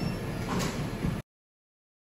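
Background noise inside a busy shop, a steady low rumble with one brief louder sound about half a second in. The sound cuts off abruptly to silence a little over a second in.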